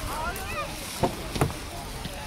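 Wind buffeting the microphone outdoors, a steady low rumble, with a short call from a voice near the start and two sharp knocks about a second in.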